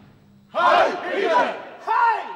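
A group of men shouting together in unison, as in a chorused salute. There are two loud shouts: the first starts about half a second in and lasts about a second, the second comes near the end.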